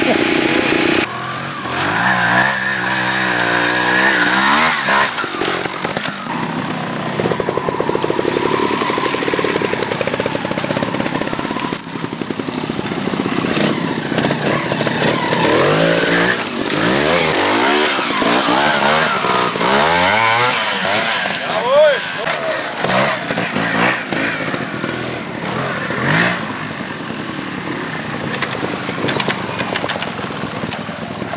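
A GasGas trial motorcycle's engine revving up and down in repeated blips of throttle as the bike is ridden over rocks, its pitch rising and falling again and again.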